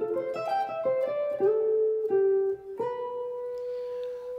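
Clean-toned electric guitar playing a quick run of single picked notes from the altered scale over the G-flat 7 chord, then two longer notes, and landing on one note held and ringing from about three seconds in. The held note is the sharp four over the resolved F chord.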